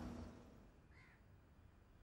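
Near silence in a pause in the phone conversation, broken by one faint, brief, high call about a second in.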